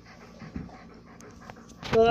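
A pet dog close to the microphone: soft breathing sounds, then near the end a loud, rising pitched call from the dog begins.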